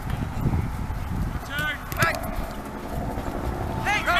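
Wind rumbling on the microphone, with two brief raised shouts from people at a soccer game about halfway through.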